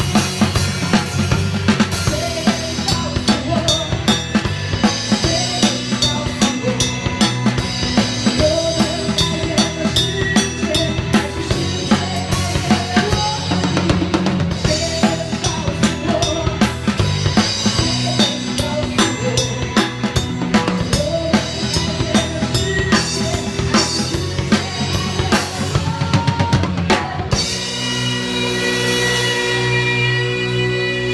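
A live band with a drum kit heard close up: a steady groove of bass drum, snare and Sabian cymbals over the band's held chords. About 27 seconds in the drumming stops and only the sustained chords ring on.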